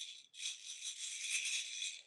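Loose beads rattling as they are shaken, a continuous high-pitched rattle starting about a third of a second in.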